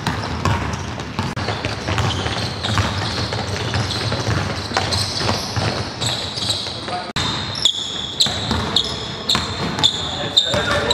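Basketballs bouncing on a hardwood court in a large hall, with indistinct voices. From about seven seconds in, sneakers squeak sharply and repeatedly on the floor.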